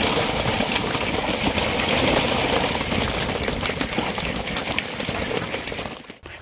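A flock of domestic ducks scrambling and beating their wings, a continuous rustling flutter with many small clicks and no quacking.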